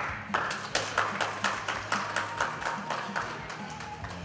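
Hand clapping in a steady rhythm, about three claps a second, over background music. It starts at the beginning and fades out near the end.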